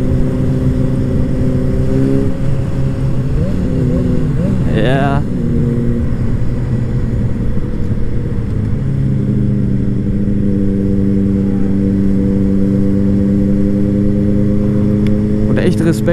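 Inline-four motorcycle engine heard on board with wind rush. Its pitch rises and falls about three to six seconds in, then holds steady at cruising speed.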